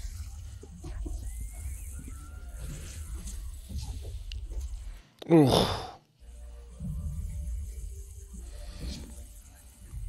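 Film soundtrack of a battle scene playing quietly: a steady low rumble under faint music. It drops out briefly about five seconds in, then comes back.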